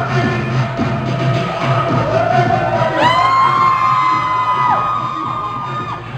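Dancehall music playing over the hall speakers while the audience cheers and whoops. About halfway, long held high tones come in, one carrying on almost to the end.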